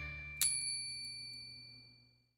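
A single bright bell ding, struck about half a second in and ringing out for over a second, as the last held chord of a children's jingle fades away.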